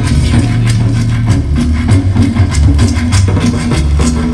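Live cumbia band playing an instrumental passage over a loud concert sound system: a strong bass line under regular percussion hits, with no singing.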